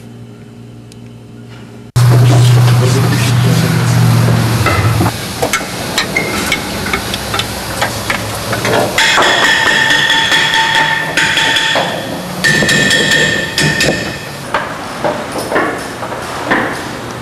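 Auto repair shop work noise: many sharp clanks and knocks of tools on metal. A loud low hum starts suddenly about two seconds in, and a steady high whine from a power tool runs for several seconds in the middle.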